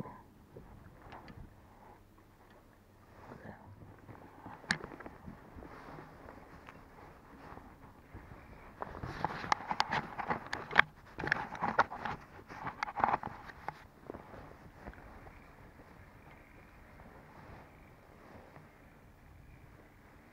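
Rustling and clattering of hands handling fishing gear in a boat, with a louder spell of knocks and rubbing in the middle lasting about five seconds.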